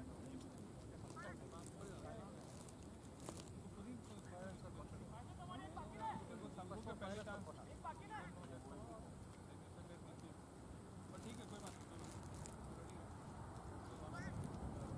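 Faint, indistinct voices of several people talking across an open field, too distant to make out words.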